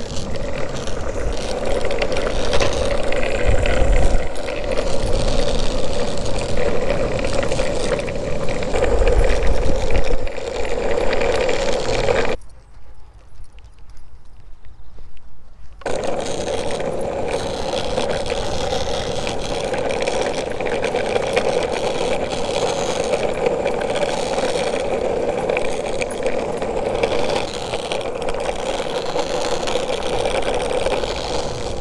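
Boosted electric skateboard rolling fast on pavement: a steady hum from its wheels and motor, with wind buffeting the microphone. The sound drops away for a few seconds near the middle, then resumes.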